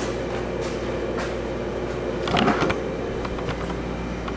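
Camera being handled and moved, a brief rustle about halfway through and a few light clicks, over a steady mechanical hum from the shop.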